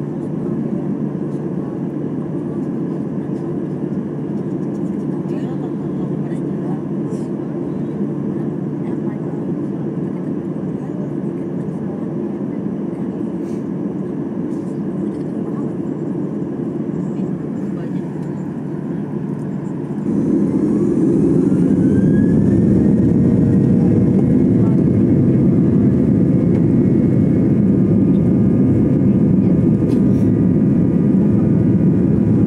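Airliner jet engines heard from inside the cabin: a steady low hum for the first two-thirds, then about twenty seconds in the sound steps up louder and a whine rises in pitch and holds. The engines are spooling up to takeoff thrust.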